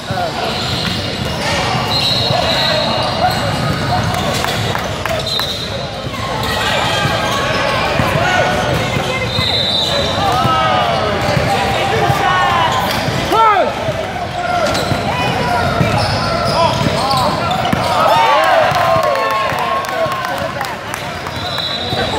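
Basketball being dribbled and sneakers squeaking on a hardwood court, with players and spectators calling out, all echoing in a large gym.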